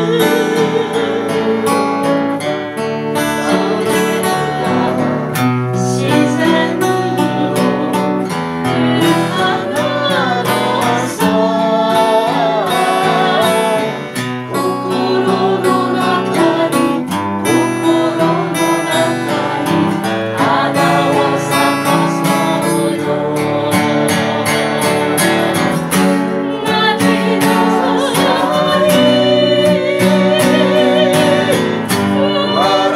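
Men's and women's voices singing a song together in a small group, over a continuous instrumental accompaniment.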